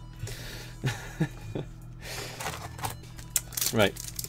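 Rustling and crinkling of a foil Yu-Gi-Oh booster pack being handled, with sharper crinkles near the end as it is gripped to be torn open.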